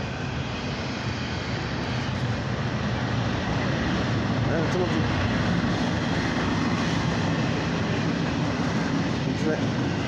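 A low, steady engine drone that grows louder over the first few seconds and then holds.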